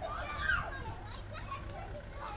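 Young children's voices calling and chattering as they play, with one louder call about half a second in.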